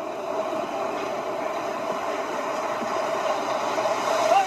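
Steady rushing noise of ocean surf as waves break on a beach, growing slightly louder.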